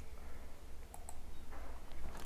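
A few faint, light clicks, two close together about halfway through and another near the end, over a steady low hum.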